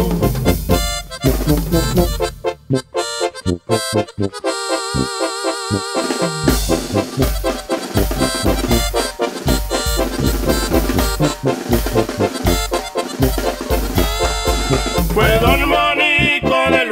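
Instrumental break of a duranguense banda corrido: a sustained lead melody over a steady bass-and-drum beat, with no singing. The beat thins out and goes sparse for a couple of seconds about three seconds in, then picks back up.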